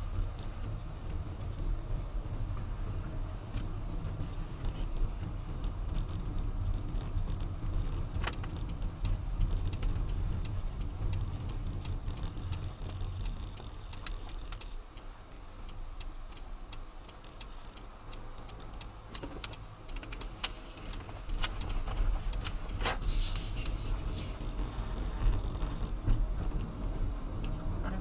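Inside a car's cabin, a steady low hum of engine and road noise as the car drives, easing off about halfway through as it slows and stops, then rising again as it pulls away. Short repeated ticks, most likely the turn signal, are heard while the car approaches the stop and turns.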